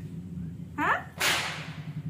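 A short rising vocal sound just under a second in, followed at once by a sharp hissing swish that fades within about half a second, over a steady low hum.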